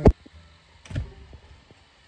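A sharp click right at the start, then a duller thump about a second in, over faint background quiet.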